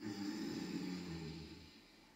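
A person breathing out audibly in one long exhale that starts sharply and fades away in under two seconds.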